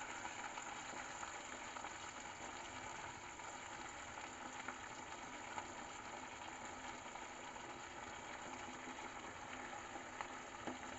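Onions frying in oil and sauce in a steel wok, a steady, faint sizzle.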